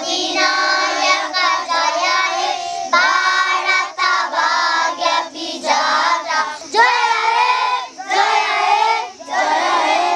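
A group of schoolchildren singing together in unison, in phrases with short breaks between them.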